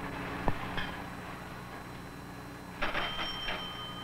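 Ship's engine order telegraph being swung: a few rattling clacks about three seconds in, then its bell ringing on as a steady high tone, over a low steady hum.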